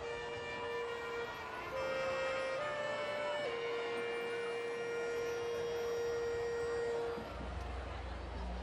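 Marching band playing slow held chords. The top note steps up twice, drops back, and settles into one long chord that is cut off about seven seconds in.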